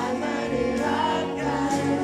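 A man singing a song live into a handheld microphone over amplified backing music.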